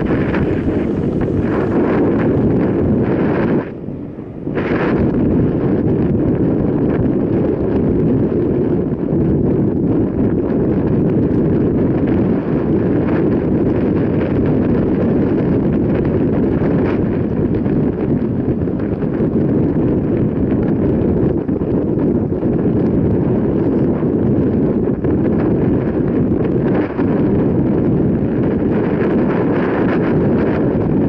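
Wind buffeting the microphone of a camera riding along on a moving mountain bike: a loud, steady low rush, with a brief drop about four seconds in.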